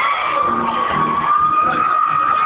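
Live arena concert music heard from the audience: a long held high note, gliding slightly then level, over a steady drum beat.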